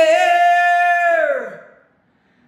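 A man singing a cappella, holding one long note that then slides down in pitch and fades out about a second and a half in.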